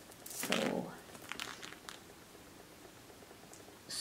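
A short rustle, then a few light clicks as a handbag's metal chain strap is handled.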